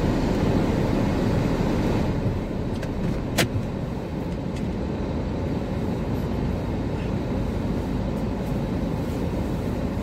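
Steady low rumble of a car heard from inside the cabin, a little louder for the first two seconds and then evening out. A sharp click comes about three and a half seconds in.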